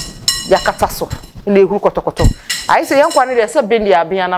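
Kitchenware clinking: a mixing bowl knocked against other dishes, with one clink ringing briefly at the very start.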